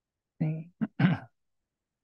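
A person clearing their throat in three quick bursts within about a second, the last the loudest.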